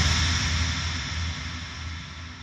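Rumbling tail of a deep boom, fading steadily away.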